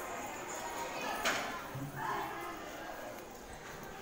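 Girls' voices chattering, with one sharp knock about a second and a quarter in.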